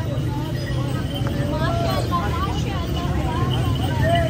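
Men's voices talking and calling out in short bursts over a steady low rumble of street traffic.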